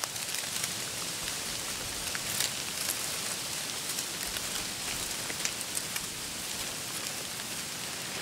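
A steady high hiss with faint scattered ticks through it.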